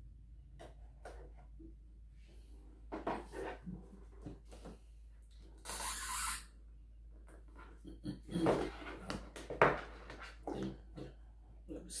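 A cardboard watch box being cut open with a small knife and pulled apart by hand. Scattered small clicks and scrapes give way to a brief scraping hiss about six seconds in, then a cluster of knocks and rubbing near the end as the tape-stuck lid is worked loose.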